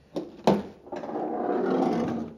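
The trunk lid of a 1940 Ford coupe being opened: a sharp click from the latch about half a second in, then a long creak lasting just over a second as the lid swings up on its hinges.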